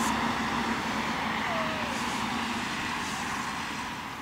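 A steady engine hum, like a motor vehicle running at a distance, slowly fading through the second half.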